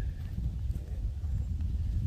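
Wind buffeting a phone's microphone outdoors: an uneven low rumble.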